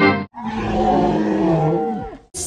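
Orchestral fanfare music cuts off. After a short gap comes an animal roar about one and a half seconds long, falling in pitch as it dies away.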